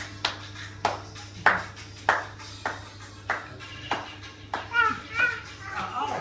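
Hand clapping in a steady beat, about three claps every two seconds, with a brief high voice near the end.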